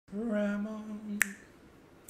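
A man's voice holding one steady sung note for about a second, ending in a single sharp finger snap, the loudest sound.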